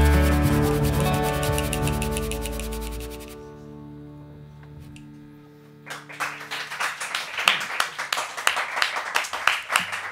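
The band's final chord rings and slowly dies away, with a fast rattling drum roll over it for the first three seconds. About six seconds in, a few people start clapping, a loose, irregular applause in a small room.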